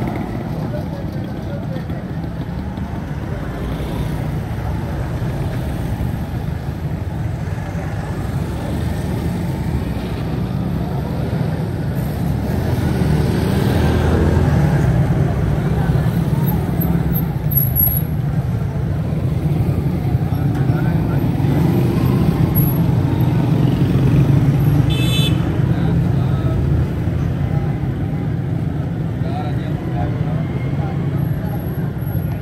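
Busy bazaar street traffic: motorcycles and motor rickshaws running and passing, with people's voices in the background. The traffic noise swells twice as vehicles pass close, and a brief high-pitched horn sounds about five seconds before the end.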